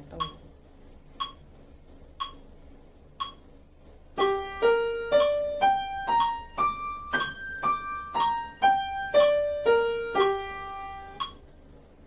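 A metronome clicking once a second, four clicks alone and then on under a Yamaha upright piano playing a two-octave G minor arpeggio with the right hand, mezzo forte and legato. Even notes, two to each click, rise from G up through B-flat and D to the G two octaves higher and come back down, ending on a held G.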